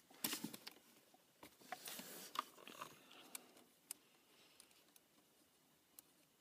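Faint scattered clicks and short scrapes of a hand working at the car battery's terminal and its plastic terminal cover, mostly in the first few seconds.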